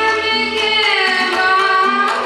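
A female vocalist sings a long held note in Indian classical style; the note glides downward about a second in, over a steady drone, with tabla accompaniment.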